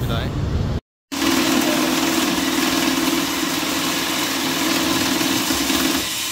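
Banknote counting machine running: a steady motor hum under a fast, even riffle of notes passing through it as a stack is counted. It starts suddenly about a second in, after a brief silence.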